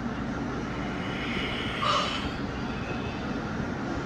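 Steady rumbling background noise from a television film's soundtrack, played through the TV's speakers, with a faint short tone about two seconds in.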